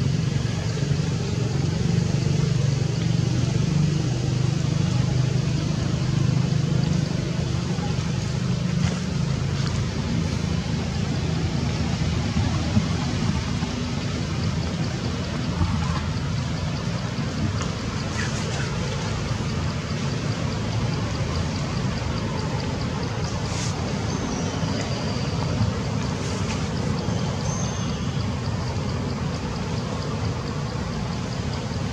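Steady low background rumble, heavier in the first half and easing after the middle, with a few faint clicks.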